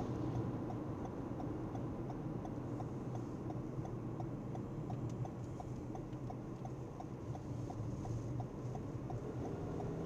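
Car turn-signal indicator ticking evenly, about three clicks a second, over the steady drone of engine and road noise inside the cabin, as the car signals a right turn.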